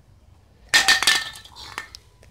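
Metal aerosol spray can clinking on concrete: one sharp ringing hit about three-quarters of a second in, then a few smaller clatters.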